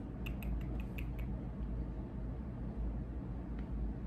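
Fiskars rotary cutter rolling across fabric on a cutting mat, making a quick run of short ticks in the first second or so, then fainter ticks under a steady low room hum.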